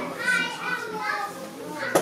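Indistinct voices talking in a room, high voices among them, with a sharp click just before the end.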